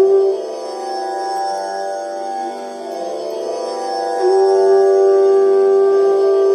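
G-scale bansuri (bamboo flute) holding a long steady note against a tanpura drone tuned to G, the flute being checked against the drone. The flute's note breaks off about a third of a second in, leaving mostly the drone, and comes back with a slight upward slide a little after four seconds.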